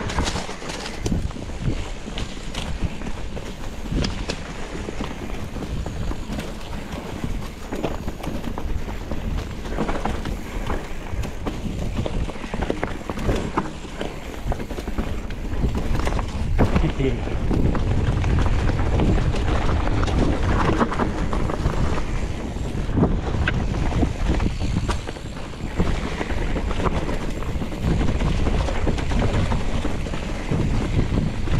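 Mountain bike riding a rough dirt singletrack, heard from an action camera on the bike or rider: a constant clatter of tyres, chain and frame over roots and stones, with irregular sharp knocks. Wind rumbles on the microphone throughout and gets louder a little past halfway.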